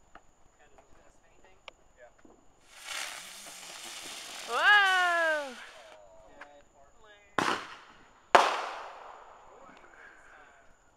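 Aerial firework going up with a long hiss and a loud falling cry over it, then two sharp bangs about a second apart, each trailing off.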